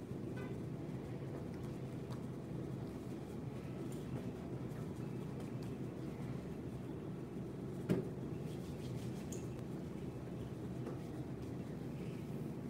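Steady low hum of room noise, with one sharp click about eight seconds in.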